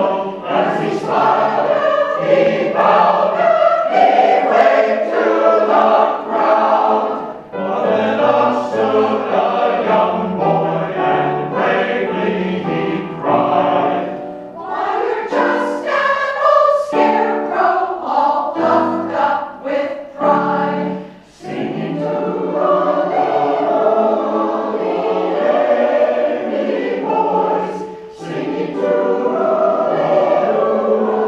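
Large combined choir of men's and women's voices singing, with brief breaks between phrases a few times.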